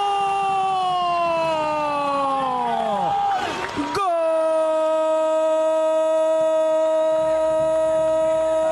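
A Spanish-language football commentator's drawn-out goal shout held on one long note, sliding down in pitch and breaking off about three seconds in. After a brief break, a second shout starts about four seconds in on a lower note and is held steady.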